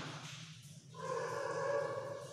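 Chalk scratching on a blackboard as a word is underlined and punctuated, fading out; about a second in, a steady pitched hum takes over.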